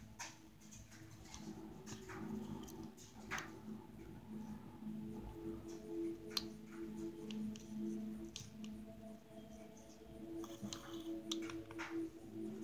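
Quiet ticks and rustles from a beading needle and thread being stitched through seed beads and felt, the sharpest ticks about three and six seconds in, over faint background music with held notes.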